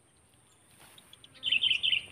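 A small bird chirping in quick runs of short, high notes, starting about a second and a half in.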